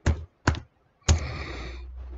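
Typing on a computer keyboard: three separate key presses about half a second apart, the third followed by about a second of steady noise with a low hum.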